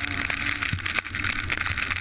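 Motocross bike engine running as the bike rides the track, with steady rush from wind and scattered sharp clicks throughout.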